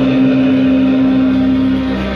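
Live Romanian folk band music from saxophone and electronic keyboard, with one long note held steady and ending near the end.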